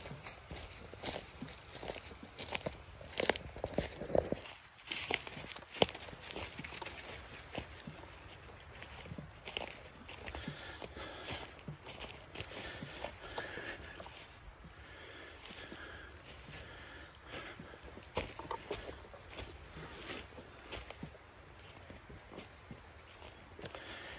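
Footsteps on a dry pine-forest floor, uneven, frequent in the first ten seconds or so, then sparser and fainter.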